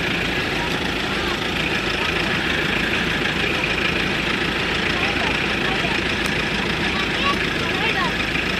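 SUV engine idling steadily with a low, even rumble.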